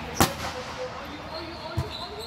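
Volleyball serve: a single sharp slap of a hand striking the ball about a quarter second in, followed near the end by a duller, low thud as the ball is played.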